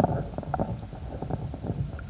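A pause in a man's speech over a handheld microphone: faint, irregular crackles and a low, steady hum, with no words.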